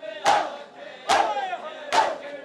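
A crowd of men performing matam, striking their chests together about once a second, three strokes here, each stroke met by a loud collective shout.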